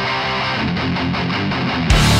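Hardcore punk song in a muffled, guitar-led break, the electric guitar strumming a steady rhythm with the top end cut away. Just before the end the full band comes back in with a loud hit.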